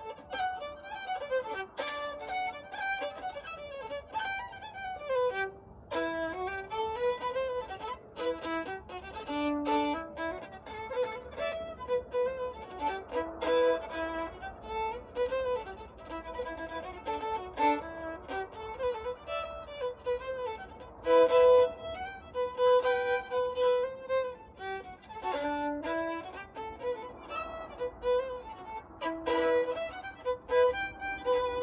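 Solo fiddle playing a traditional fiddle tune: a continuous stream of quick bowed notes.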